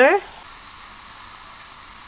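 Kumquat dipping sauce simmering in a small saucepan: a steady, soft hiss of bubbling liquid.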